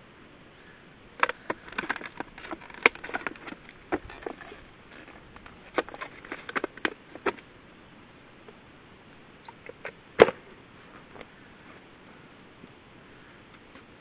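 A shot-through thin plastic water bottle crinkling and crackling as it is handled and tipped, with irregular clicks through the first half. A few more clicks come later, the loudest a single sharp click about two-thirds of the way through.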